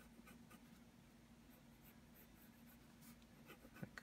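Faint scratching of a colored pencil drawing on paper in short, irregular strokes, over a low steady hum.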